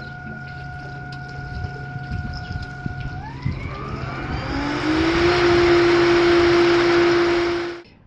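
Hayward variable-speed pool filter pump ramping from 35% to full speed: a steady motor whine and low hum, then about three seconds in the whine climbs in pitch and the running noise grows much louder as the pump reaches 100%. The sound cuts off just before the end.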